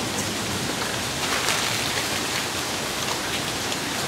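Steady rain falling, an even hiss with no breaks.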